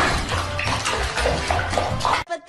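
Water splashing and sloshing in a shallow plastic basin as a live lobster thrashes in it, loudest at the start.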